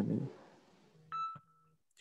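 A single short electronic beep, one steady tone lasting about a third of a second, a little past the middle, after a voice fades out at the start.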